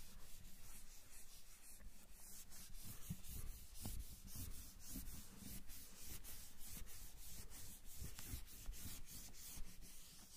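Marker writing being wiped off a whiteboard with an eraser: quick back-and-forth rubbing strokes, about four a second.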